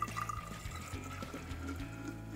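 Water poured from a plastic pitcher into a tall glass bottle, a steady splashing fill whose pitch rises slightly as the bottle fills.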